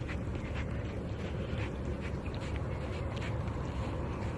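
A white-tailed deer licking and sniffing at a pair of jeans up close: a run of short, soft sounds at irregular intervals over a steady low background rumble.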